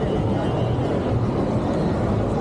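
Steady city street noise at a busy intersection: a continuous low traffic rumble with no single sound standing out.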